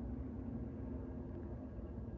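Steady low background rumble with a faint hum, and no distinct sound event: room tone.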